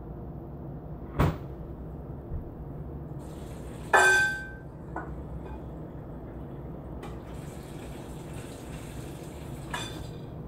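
Off-camera kitchen handling noises over a steady low hum: a sharp click about a second in, a louder clink that rings briefly about four seconds in, and a steady hiss over the last three seconds that ends with another click.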